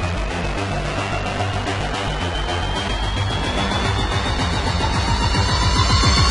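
Electronic background music with a steady beat and a tone that rises slowly in pitch, growing louder toward the end.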